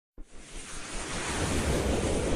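A noisy whoosh that starts just after the opening and swells steadily louder: the rising sound effect of an animated logo intro.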